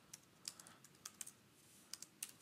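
Faint typing on a computer keyboard: a handful of irregular key clicks as a name is keyed in.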